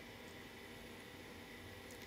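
Near silence: a faint, steady hiss of room tone with no distinct events.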